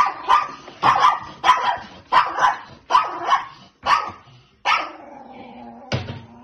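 Small dog barking rapidly and repeatedly, about two sharp barks a second, then one longer, lower drawn-out sound near the end.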